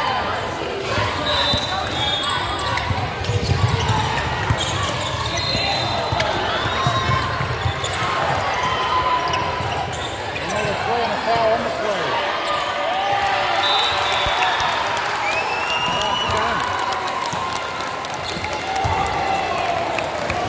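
Many overlapping voices of players and spectators talking and calling out, with a basketball bouncing on the hardwood court.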